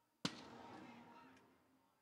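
A single sharp thump a quarter second in, with a reverberant tail that fades out over about a second and a half.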